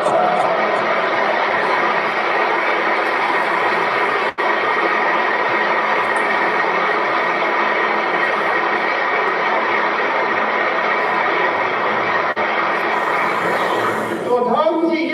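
Steady crowd applause in an old archival speech recording, played back over loudspeakers, with two brief dropouts in the recording.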